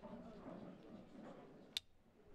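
Pool balls being racked by hand in a triangle: mostly quiet under a faint murmur of voices, then one sharp click of a ball near the end.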